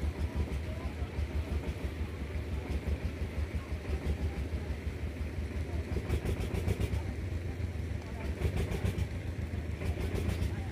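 Steady low rumble on board a river boat crossing the water, with a spell of rapid rattling about six seconds in and again near nine seconds.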